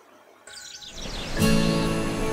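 Birds chirping, joined about a second and a half in by soft background music with sustained, steady tones that becomes the loudest sound.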